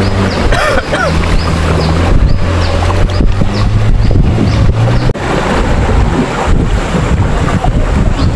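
Outboard motor of a river longboat running steadily under a rush of river water and wind on the microphone; about five seconds in, the engine note drops away suddenly, leaving the water and wind.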